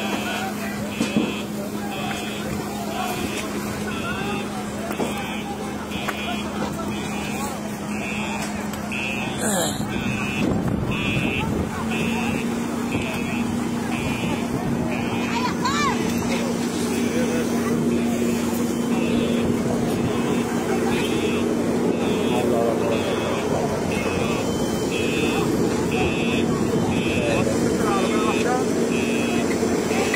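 An electronic alarm beeping at an even pace without pause, with a steady low engine hum that rises slightly in pitch partway through, and voices of a crowd beneath.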